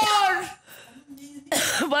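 A high, raised voice breaks off about half a second in. After a quieter pause with a faint low tone, a sudden harsh cough-like burst comes about a second and a half in and runs straight into speech.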